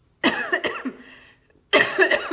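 A woman coughing: two bouts of coughing about a second and a half apart.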